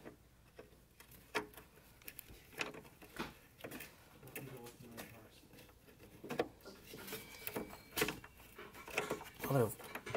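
Irregular light clicks and metallic knocks of a ratchet and socket being worked on a car horn's mounting bolt, which is not unthreading.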